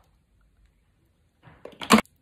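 Near silence, then the shell of a cooked crab leg cracking and crunching as it is broken apart by hand: several quick snaps about a second and a half in, with the loudest crack near the end.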